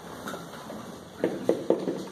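Dry-erase marker writing on a whiteboard: quiet room tone, then a few short, quick marker strokes in the second half.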